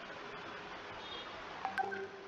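Steady background hiss, with a brief electronic beep-like tone and a sharp click near the end.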